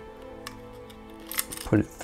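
Light metallic clicks of a star washer and volume pot being handled against a metal guitar control plate, twice, over faint background music of held tones.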